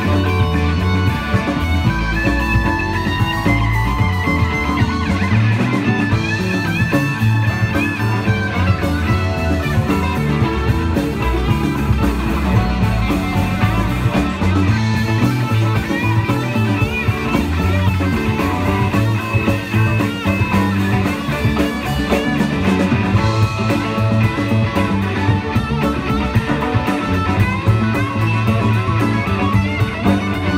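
Live rock band playing an instrumental jam without vocals: electric guitars leading over electric bass, a Nord Electro keyboard and drums, at a steady full level.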